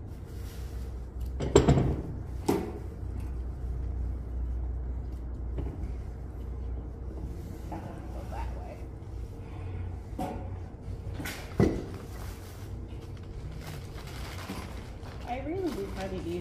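Steady low room hum with faint voices in the background and a few sharp knocks, the loudest about a second and a half in and again near twelve seconds.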